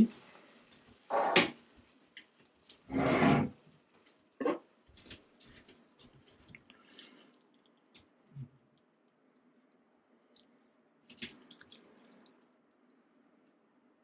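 Two louder noises in the first few seconds, then scattered light clicks and taps of metal tongs against a frying pan as spaghetti is lifted out and plated, with a soft thump about eight seconds in.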